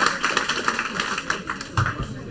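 Audience applause thinning out into scattered single claps and fading, with one dull thump near the end.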